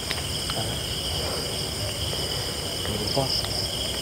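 Night chorus of insects such as crickets, a steady high-pitched trilling in several pitches that runs on without a break.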